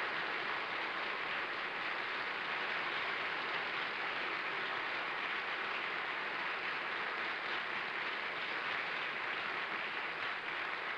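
Studio audience applauding steadily, a dense, even clapping that holds at one level throughout.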